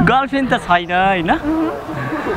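Speech only: people's voices talking, over a steady low hum.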